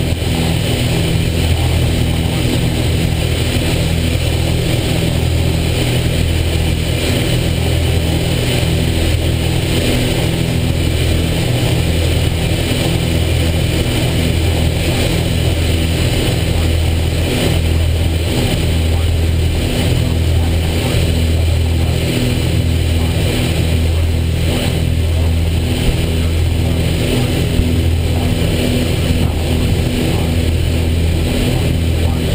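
Cabin drone of a Piper Seneca II's two turbocharged six-cylinder piston engines and propellers, both running in cruise. The low drone rises and falls in a slow, regular throb, the beat of the two propellers turning at slightly different speeds.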